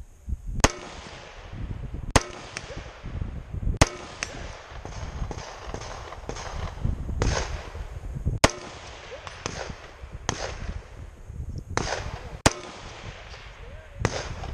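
Gunshots from other shooters on the range, about ten sharp cracks at irregular intervals, each with a trailing echo.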